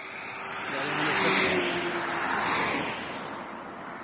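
A road vehicle passing close by, its engine and tyre noise swelling to a peak about a second in and then fading away.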